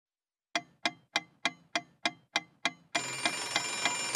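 Alarm-clock sound effect: eight sharp, ringing ticks at about three a second, starting about half a second in, then the bell ringing steadily from about three seconds in.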